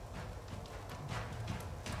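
Low steady hum and hiss, with a few faint clicks.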